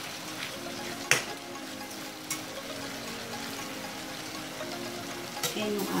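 Chicken breast pieces frying in butter in a pan, a steady sizzle. A sharp clack of the stirring utensil against the pan comes about a second in, with lighter clicks a little after two seconds and near the end.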